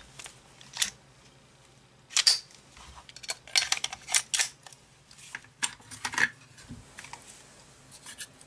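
Sharp metallic clicks and clacks of a Ruger Mark IV .22 pistol being cleared by hand, its magazine pulled out and its parts worked. The clicks come in irregular clusters, the busiest about two seconds in and around the middle.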